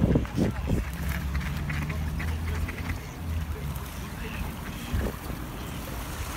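Mallard ducks quacking now and then over a steady low rumble.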